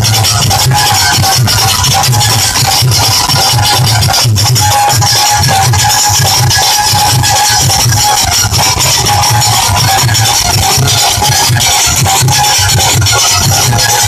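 A Punjabi folk instrument ensemble playing, with a drum beating a steady rhythm under a held melodic tone. The sound is very loud and distorted throughout.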